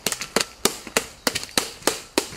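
Automatic gunfire, a burst of sharp shots at about four or five a second.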